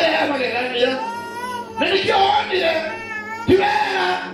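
A man preaching loudly into a microphone over a church PA, his voice stretching twice into long, wavering drawn-out tones.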